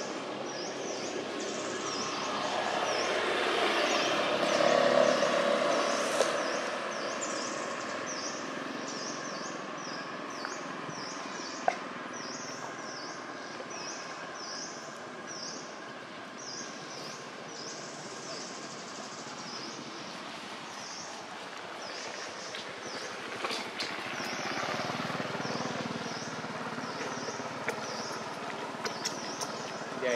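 Outdoor ambience: a steady wash of noise that swells a few seconds in and again near the end, under a high-pitched chirp repeating evenly a little more than once a second. One sharp click partway through.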